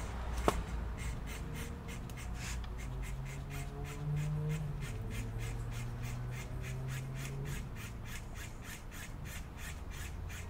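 A hand tool scraping along a plastic laptop case seam in rapid, even strokes, about four a second, as the case is pried open. A low hum runs underneath for much of it and stops about three-quarters of the way through.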